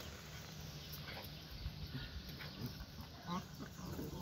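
Small dogs whining faintly in a few short, scattered whimpers as they sniff and greet each other.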